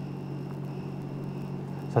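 Steady low electrical hum with a faint high whine and light hiss: the background room tone of a TV studio sound feed.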